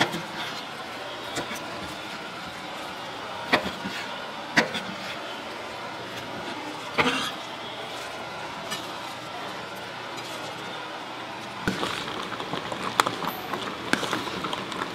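Kitchen knife chopping down through sundae and offal onto a cutting board: sharp single knocks a second or more apart over a steady shop background, then a quicker run of knocks and clinks near the end.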